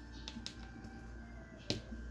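A few light, sharp clicks over a steady low hum, the loudest one near the end.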